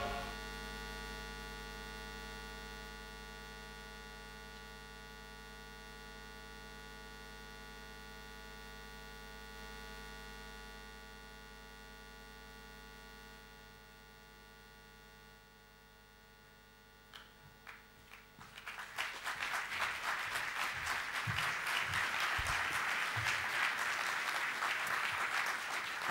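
A steady electrical mains hum with many overtones, slowly fading; about three-quarters of the way in, a few scattered claps start and grow into audience applause.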